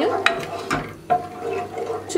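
A wooden spoon stirring cream as it heats in a saucepan: liquid sloshing, with a few sharp clicks in the first second.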